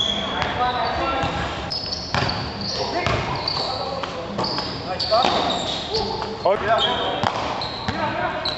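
Basketball bouncing on a hard court amid short high squeaks and players' voices and shouts, all echoing in a large gym hall.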